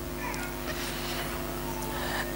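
Steady electrical hum of a microphone and public-address system during a pause in speech, with a faint, short high-pitched sound near the start.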